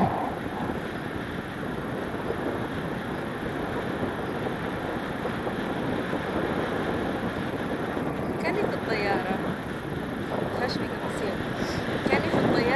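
Steady wind rushing over the camera microphone of a paraglider in flight, with brief faint voice sounds in the last few seconds.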